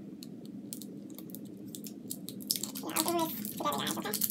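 Small plastic clicks and scrapes of a tight plastic bottle cap being worked by hand as someone tries to pop it off, growing into a louder stretch of handling noise about two and a half seconds in.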